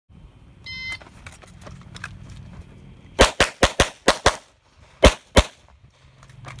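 A shot timer's start beep, then about two and a half seconds later a fast string of six pistol shots and, after a short pause, two more.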